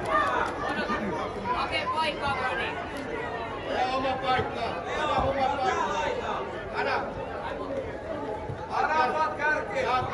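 Many voices chattering and calling out at once, overlapping and echoing in a large indoor football hall: the sound of children playing football, with adults on the sidelines.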